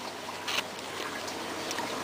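Faint, steady trickle of water from a running aquaponics system, with a light click about half a second in.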